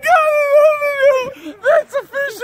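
A person's long, drawn-out howling yell, held for over a second and sinking slightly in pitch, followed by a couple of short whoops near the end.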